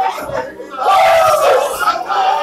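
Worshippers' voices shouting together, loud and without clear words; about halfway through one voice swells into a long, loud shout whose pitch falls at the end.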